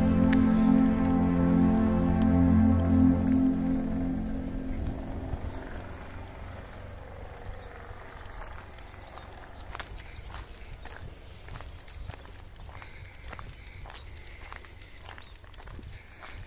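Background music fades out over the first few seconds. It leaves faint outdoor ambience and, from about the middle on, footsteps on a dirt-and-gravel path at a walking pace, about two steps a second.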